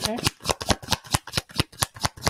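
A deck of tarot cards being shuffled by hand: a fast, even run of card clicks, about nine a second.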